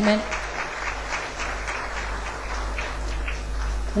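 Audience applauding, a dense spatter of many hands clapping that swells slightly toward the end.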